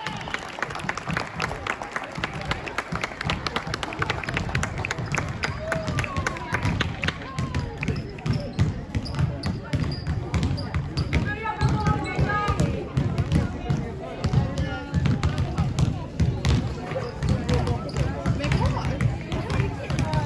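Several basketballs bouncing irregularly on a sports hall floor, a few thuds a second, amid players' chatter and calls.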